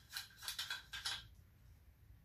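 Fuel sloshing inside the tank of a vintage Sears single-mantle lantern as it is shaken, a quick series of swishes and light rattles that stops after about a second.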